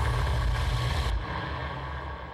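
Deep synthetic rumble with a hiss on top, the low boom of a TV channel's logo ident. The hiss cuts off about a second in and the rumble fades away.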